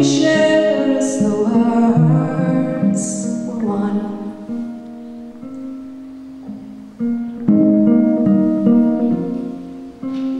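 A woman singing a slow folk song while strumming her guitar. Her voice stops about four seconds in, leaving the guitar chords ringing quietly, then firmer strumming comes back in about seven seconds in.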